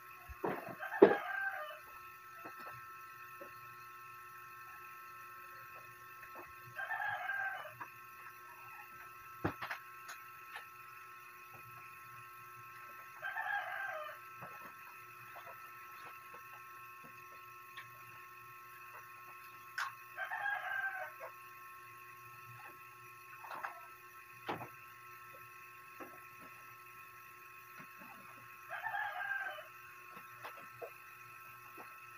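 A rooster crowing about five times, each crow about a second long and coming every six or seven seconds. A few sharp knocks and clicks fall in between, the loudest about a second in.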